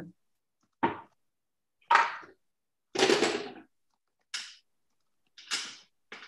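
A small bottle of liquid watercolor being opened and handled: five short knocks and scrapes about a second apart, the one about three seconds in the longest, as the cap comes off and the cap and bottle are set down on the table.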